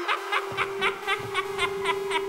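Rhythmic laughter, about four short 'ha's a second, over a steady held synth note in a rap track's outro; a low bass comes in about half a second in.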